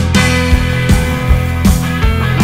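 New wave rock song with a full band playing: bass, guitar and drums, the drums striking at a regular beat.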